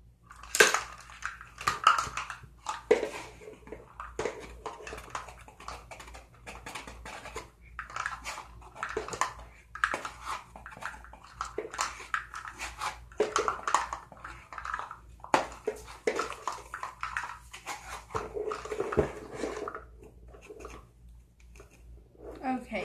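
Irregular rustling, scraping and clicking as a cardboard box of baking soda is handled and a metal spoon scoops from it, with a sharp knock about half a second in.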